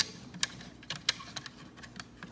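Scattered light clicks and taps from a plastic toy bulldozer being handled close to the microphone, with a sharper click at the start and another about a second in.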